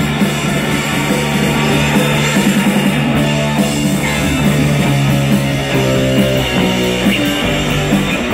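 Live garage punk band playing an instrumental passage on electric guitar, organ and drums, with a steady driving beat and held low notes.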